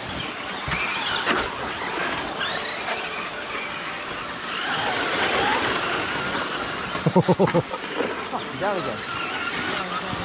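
A pack of Traxxas Slash electric short-course RC trucks racing on dirt, their motors and drivetrains whining up and down in pitch as they accelerate and brake. A person laughs about seven seconds in.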